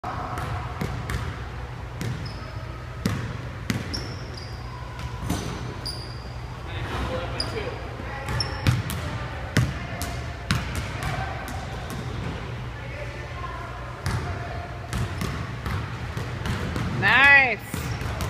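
A basketball bouncing on a hardwood gym floor, a scattering of irregular thuds that echo in the large hall, with a few short high squeaks of sneakers on the floor and a steady low hum underneath. A voice speaks near the end.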